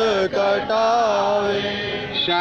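A man chanting a devotional prayer into a microphone, drawing out long, slowly bending notes.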